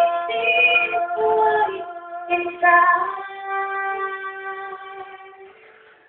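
Girls singing live together in sung phrases, ending on a long held note that fades away near the end.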